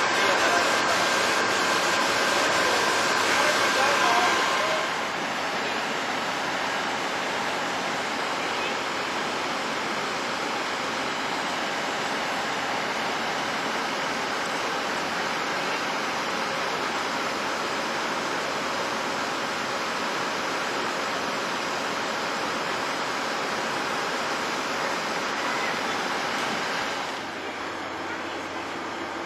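Fire engines and their hose lines running at a house fire, heard as a steady rushing noise. Voices sit over it for the first few seconds, and it steps down a little near the end.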